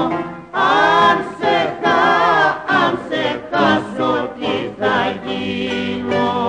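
Rebetiko song recording: voices singing a line in short phrases with brief breaks between them, over steady instrumental accompaniment.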